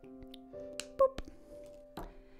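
Soft background music with sustained notes, and a few sharp plastic clicks about a second in as a glue stick is capped and set down on the table.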